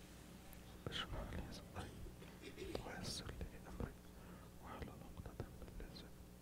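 Faint whispering with small rustles and clicks as a man sits down, heard through a close headset microphone.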